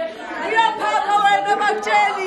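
Several women's voices chattering and calling out excitedly over one another, one voice drawing out a long held note in the middle.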